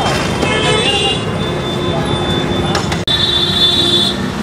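Busy street traffic with a vehicle horn sounding, steady and high, over the last second, and voices in the background.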